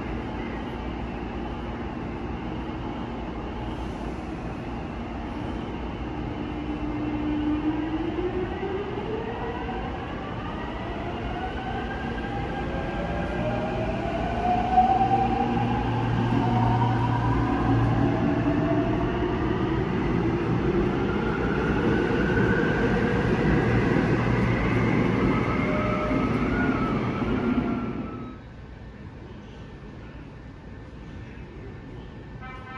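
Seoul Subway Line 5 electric train pulling out of the station. Its inverter-driven traction motors whine in several tones that glide upward in pitch and grow louder as it accelerates. The sound cuts off suddenly near the end.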